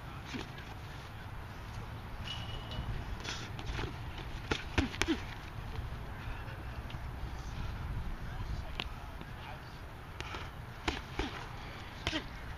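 Padded boxing gloves smacking against gloves and headgear in sparring. Scattered sharp slaps come in a quick cluster around the middle, the loudest about five seconds in, with another pair near the end. Underneath runs a steady low rumble of wind on the microphone.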